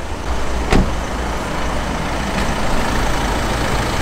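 Volkswagen Amarok pickup's diesel engine idling steadily, with a single knock a little under a second in.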